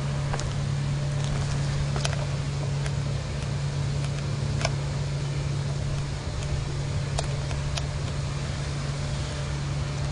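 A steady low hum with rumbling noise underneath, running evenly, and a few faint sharp clicks scattered through it.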